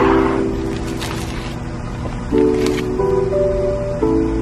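Background music: soft sustained chords that shift every second or so.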